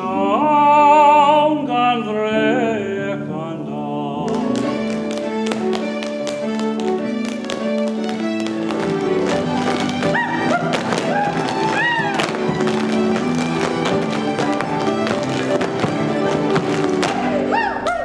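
A man's voice sings a slow line with vibrato over accompaniment. About four seconds in, a lively Irish folk dance tune takes over from a live ensemble, with quick, regular taps of dancers' shoes on the stage in time with it.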